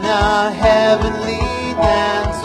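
A live worship band playing a song: a voice singing the melody over strummed acoustic and electric guitars, bass and a steady kick-drum beat.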